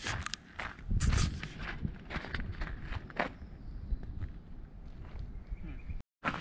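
Footsteps of a person walking down a paved, gritty trail, irregular scuffing steps, the loudest about a second in.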